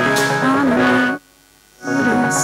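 A woman singing into a microphone with instrumental accompaniment, holding a note; shortly after the middle the music breaks off completely for about half a second, then comes back in.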